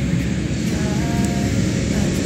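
Steady low rumbling noise, with a faint held tone for about half a second, about a second in.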